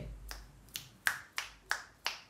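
A run of finger snaps at about three a second, sharp dry clicks in an even rhythm.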